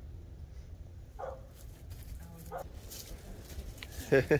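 A fox giving two short, soft calls about a second apart.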